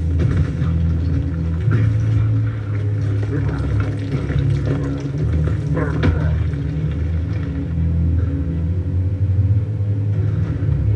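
Soundtrack of a superhero fight scene: a steady, heavy low rumble with crashing impacts, the biggest about six seconds in, as a body slams into the dirt.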